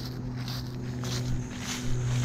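Dry fallen leaves crunching, a string of short crackles, over a steady low hum.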